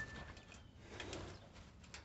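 Faint bird calls, with a thin steady whistled note at the start and a softer, lower call about a second in, over light rustling.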